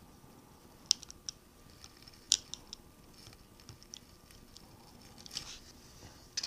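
Utility knife blade trimming a protruding tail of material at the end of a metal level-vial tube: a sparse run of light clicks and scrapes, clustered about a second and two and a half seconds in.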